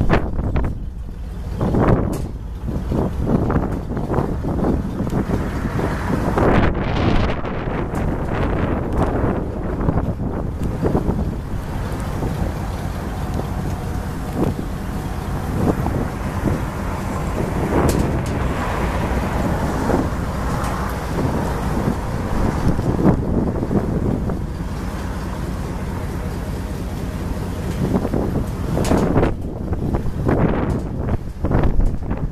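Gusty wind buffeting the microphone: a continuous low rushing that swells and eases.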